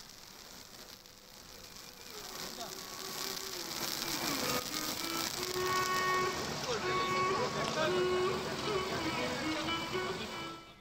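Crowd chatter with music playing: a melody of held notes that glide between pitches, fading in about two seconds in and growing louder.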